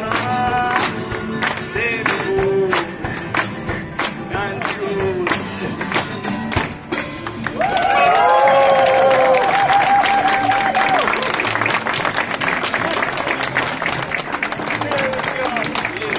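One-man band playing: a drum beat about twice a second under guitar and singing, ending about seven seconds in on a long held note. The audience then applauds.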